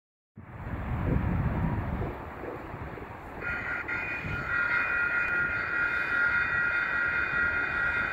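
Railroad grade-crossing warning bell starting up about three and a half seconds in and ringing steadily, a set of high steady tones, as the crossing activates for an approaching train. Before it, an uneven low rumble.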